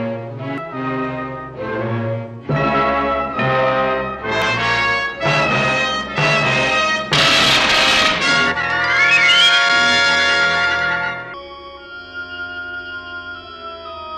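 Orchestral score with brass playing short repeated phrases that build to a loud climax around the middle. Near the end the music drops to quieter held high tones.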